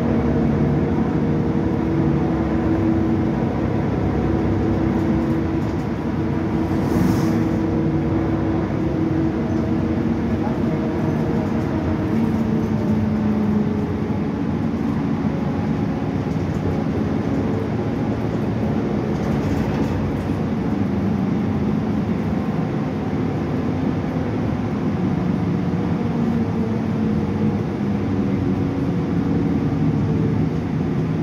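Cabin sound of a moving 2015 Gillig 29-foot hybrid transit bus: its Cummins ISB6.7 diesel and Allison hybrid drive running over road noise, the drive tones shifting slowly in pitch with speed. A brief hiss about seven seconds in.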